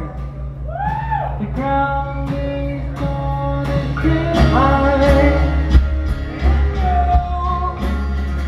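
Live rock band playing a song, a male voice singing long, sliding notes over guitar and bass. The low end grows heavier about four and a half seconds in.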